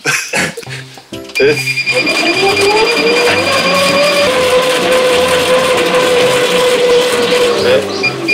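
Stationary exercise bike ridden in an all-out sprint: a whine that rises in pitch over about three seconds as the flywheel spins up, then holds steady before falling away near the end. A steady high electronic tone from the bike's console runs through the first half.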